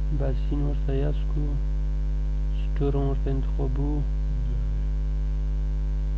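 Steady electrical mains hum throughout, with a man's voice speaking in two short stretches of phrases in the first two-thirds.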